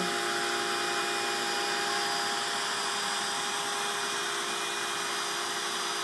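Steady electric drone of a homemade CNC machine's small router spindle and dust-collection vacuum running, holding several constant tones with no change in pitch.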